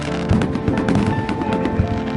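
Fireworks going off in many quick, sharp bangs, mixed with music of held notes.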